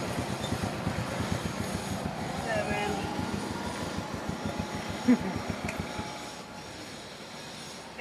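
A low, fast-pulsing mechanical rumble, like a vehicle engine, that fades away after about six seconds, with a few brief faint voices.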